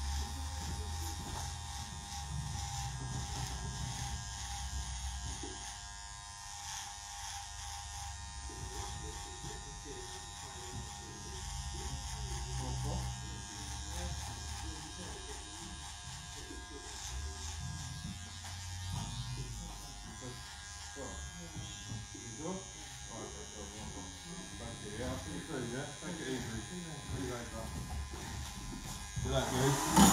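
Corded electric hair clipper running steadily with a constant buzz, trimming a beard along the neck and jawline.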